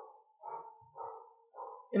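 Repeated short animal calls, about two a second, faint under the room.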